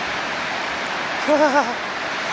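Niagara Falls (the American Falls) rushing: a steady, unbroken noise of falling water. A short laugh cuts in about halfway through.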